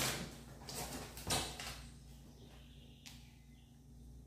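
Kraft paper being handled: three short rustles and scrapes in the first second and a half, then fainter rubbing.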